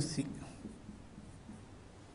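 Marker pen writing on a whiteboard, faint soft strokes, after a man's spoken word at the very start.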